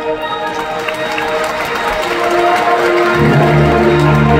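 Live concert band of woodwinds, brass and percussion playing. A held chord thins into a softer stretch with a noisy wash over it, and about three seconds in the low instruments come in strongly on sustained notes.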